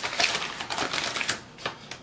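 A white paper bag crinkling as it is handled and opened by hand, a run of irregular crackles that fades toward the end.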